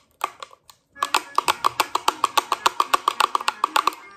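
Homemade pellet drum (string drum) made of two jar lids on a stick, twirled so that the beads on its strings strike the lids. A few loose clicks come first, then from about a second in a fast, even rattle of about ten strikes a second that stops just before the end.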